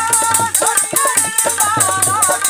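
Live Punjabi folk music: hand drums beating a quick, even rhythm with a jingling rattle on the beats, under a wavering held melody line.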